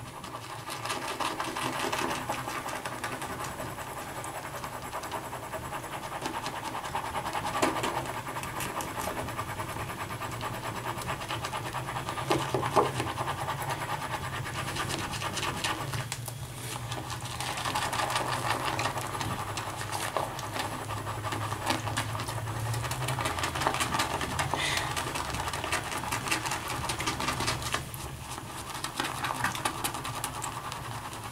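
Synthetic-knot shaving brush swirling tallow shaving soap into lather in a pottery shaving bowl: a steady wet swishing and scratching of bristles against the bowl.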